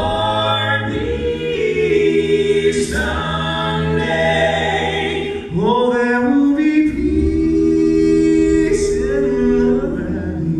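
Southern gospel male quartet singing a cappella in four-part close harmony, with long held chords over a low bass voice; the chord shifts about a second in and again about halfway through.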